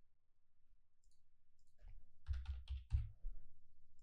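A few computer keyboard keystrokes, starting about two seconds in, as a new order price is typed into a trading platform.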